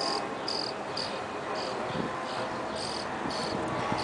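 A cricket chirping in short, high, evenly pitched chirps, about two a second, over steady background noise.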